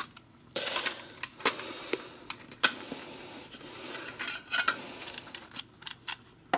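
Light plastic clicks and rattles of a cassette tape being handled and readied for the open deck of a portable cassette player, over a steady hiss. The clicks come irregularly, about half a dozen in all.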